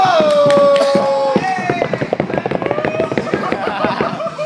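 A small crowd of spectators lets out a long drawn-out 'ooh', then breaks into rapid, uneven clapping with shouts over it.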